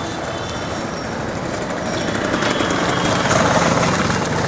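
Steady outdoor street noise with motor vehicles running, growing a little louder in the second half.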